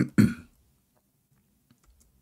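A man clearing his throat in two sharp, cough-like bursts right at the start, followed by a couple of faint clicks near the end.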